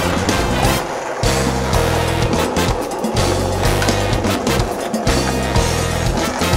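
Background music with a steady beat and stepped bass line, with a skateboard's wheels rolling on concrete underneath it.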